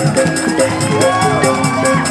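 Balinese gamelan playing a fast dance piece: bronze metallophones struck in quick, steady strokes over a rapid, even cymbal beat.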